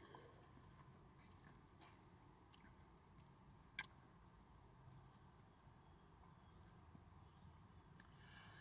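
Near silence, with one short click about four seconds in.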